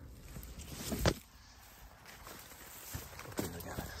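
Footsteps and the rustle of wheat plants brushing past as someone walks through a standing wheat crop, with one louder thump about a second in.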